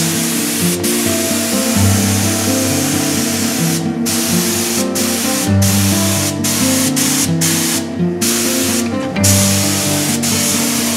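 Gravity-feed air spray gun hissing as it sprays epoxy primer, the hiss broken by short gaps several times. Background music plays underneath.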